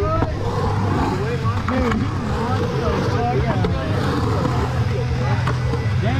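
Skateboard wheels rolling and carving on a concrete bowl, with a steady low rumble, while several onlookers talk and call out in the background.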